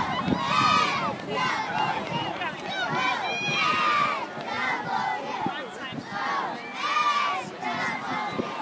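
Football crowd and sideline players shouting and cheering during a play, several raised voices yelling over one another in short repeated calls.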